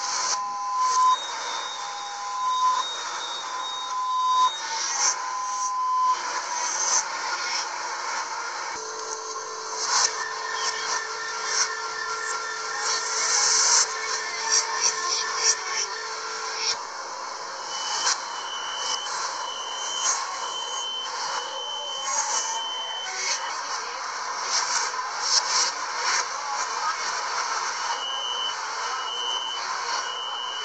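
Chinese metro door-closing warning signals played backwards, over train and station noise: first an alternating two-note electronic chime, then a steady low buzzer with fast beeping over it, then a run of high beeps a little over one a second, which come back near the end.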